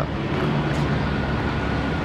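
Steady street traffic noise from passing vehicles, with a faint thin high whine over the second half.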